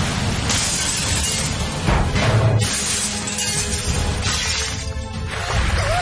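Cartoon crash sound effects of a small car tumbling down a concrete slope: three crashing, shattering bursts with a deep thud about two seconds in, over dramatic background music.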